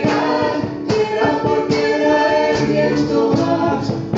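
Live band playing a song: several voices singing together over acoustic guitar and hand percussion, with a steady beat of regular strokes.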